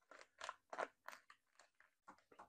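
Faint, short crunching and crackling handling noises, about seven in two seconds with silence between them.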